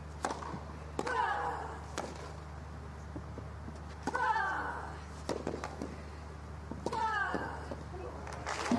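Tennis rally: racket strikes on the ball about once a second, with a player's short pitched grunt on every other shot, three times.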